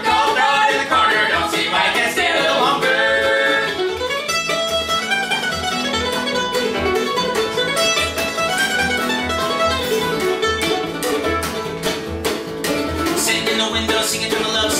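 Acoustic string band of mandolin, upright bass and acoustic guitar playing an old-time western swing tune. Sung harmony on the chorus ends about three seconds in, and then the mandolin plays an instrumental break over a steady upright-bass pulse and guitar rhythm.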